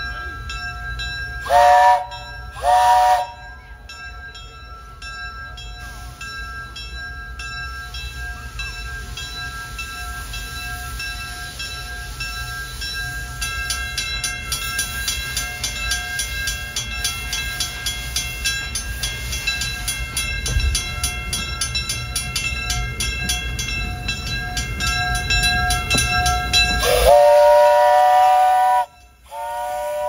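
Baldwin narrow-gauge steam locomotive whistle sounding two short toots, then the engine working along with a low rumble and a rapid, regular clicking that grows louder. Near the end the whistle blows one long, loud blast and starts another.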